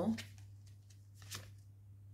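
Tarot cards being handled and a card drawn from the deck: a few soft card flicks, the loudest just over a second in.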